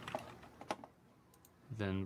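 A few faint computer keyboard clicks, spaced out, with a man's voice starting near the end.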